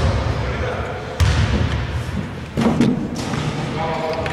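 A basketball bouncing on an indoor court floor, three heavy bounces about a second and a quarter apart, echoing in a large hall as the free throw is about to be taken.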